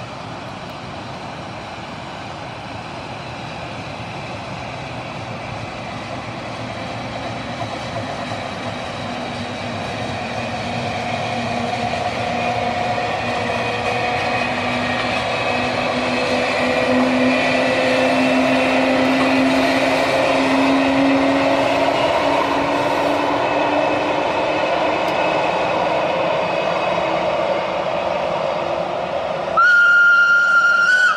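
Rhaetian Railway train hauled by an old electric locomotive running past, its motor and gear whine and wheel rumble growing louder as it comes near and then holding steady. A sudden loud, steady high tone cuts in at the very end.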